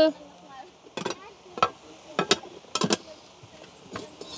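Metal pots and a kettle clanking against one another as they are handled in a kitchen drawer: several sharp clanks, some in quick pairs.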